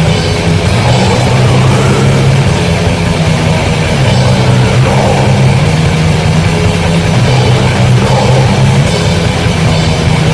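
Loud, dense heavy metal music: distorted guitars and bass holding sustained low chords over fast, constant drumming.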